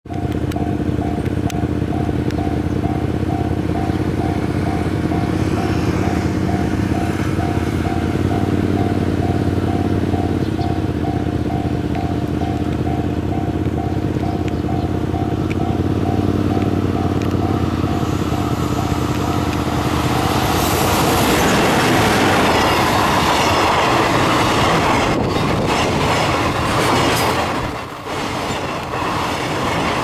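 JR Freight EF210 electric locomotive hauling a container freight train, approaching with a steady hum and then passing close by, the rush of wheels and wagons swelling loud from about twenty seconds in. For the first twenty seconds an evenly repeating tone chimes over the approach.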